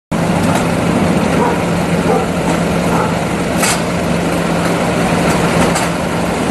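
Steady roadside vehicle noise: an engine idling with a constant low hum, faint voices in the background, and one short click about three and a half seconds in.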